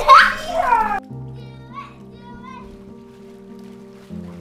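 A child's excited shrieking and shouting during the first second, cut off abruptly, then soft background music of long held notes with faint voices under it.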